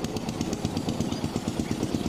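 A small engine running steadily with a rapid, even beat.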